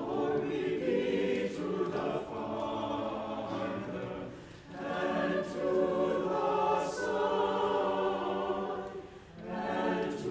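Mixed church choir singing, with two brief breaks between phrases, one near the middle and one near the end.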